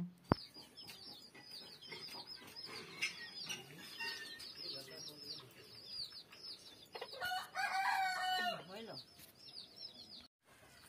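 Chickens: a steady string of short, high peeping calls, many a second, and a rooster crowing once for about a second and a half near the end.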